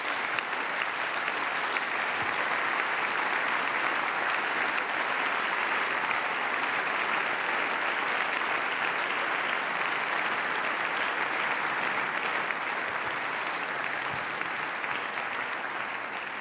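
Members of parliament applauding in a steady, sustained round that eases slightly near the end.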